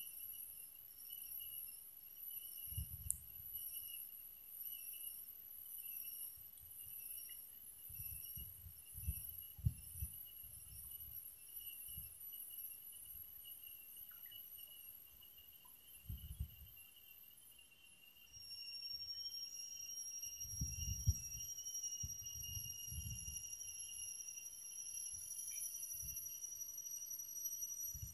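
Faint, steady high-pitched trilling of insects in several pitches at once, with another steady high tone joining a little past halfway. Soft low thumps come and go underneath.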